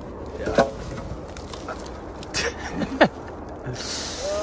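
Brush and twigs rustling and snapping as someone pushes through dense undergrowth, with a sharp swish about half a second in and a louder one about three seconds in.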